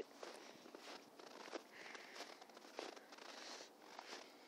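Near silence: faint rustling with a few soft clicks.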